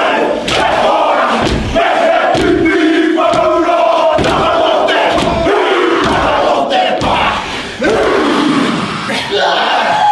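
A group of men performing a Māori haka: loud shouted chanting in unison, punctuated every half second to a second by sharp slaps and stamps.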